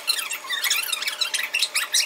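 High-pitched, rapid squeaky chatter, like voices played back fast-forward, used as a time-skip transition effect.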